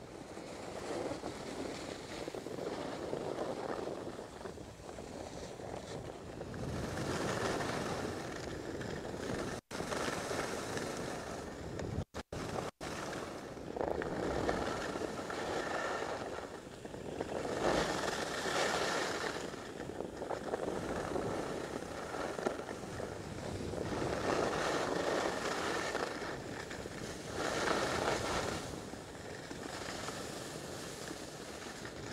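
Skis sliding and scraping on packed snow with wind on the microphone, a rushing hiss that swells and fades every few seconds. The sound cuts out for a moment a few times in the middle.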